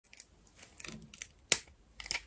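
Dalgona sugar candy cracking as it is snapped apart by hand: a few small crisp cracks, then one sharp snap about one and a half seconds in.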